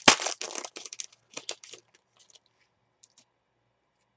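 Foil trading-card pack crinkling and tearing in the hands as it is opened. A sharp crack comes at the start, then crinkling for about two seconds that thins to a few faint clicks.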